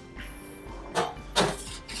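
A stainless steel pan knocking and scraping against the stainless steel riser twice, once about a second in and again a moment later, over quiet background music.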